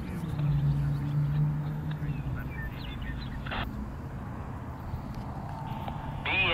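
An intermodal freight train rolling past on the rails, a steady low rumble with a low hum in the first two seconds. A few short high chirps and squeaks sound over it, and there is one brief sharp burst past the middle.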